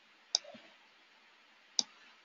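Two sharp computer mouse clicks, about a second and a half apart.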